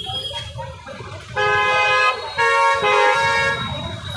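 A vehicle horn honks: one blast of about two-thirds of a second, a second and a half in, then a longer run of honking about a second later. Low traffic rumble continues underneath.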